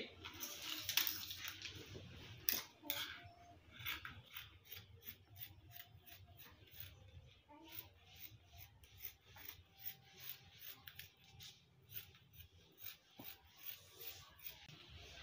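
Scissors cutting through several layers of folded fabric: a faint, quick run of short snips, about two to three a second, as the cape shape is cut out.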